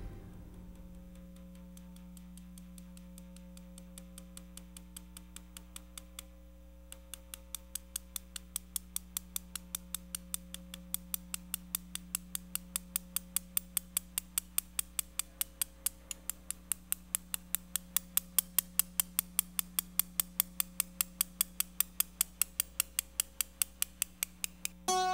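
A steady low hum with an even, sharp ticking laid over it, a little over three ticks a second. The ticks start faint a few seconds in and grow louder from about a third of the way through.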